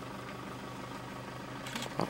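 Steady low hum of an idling vehicle engine, even in level throughout.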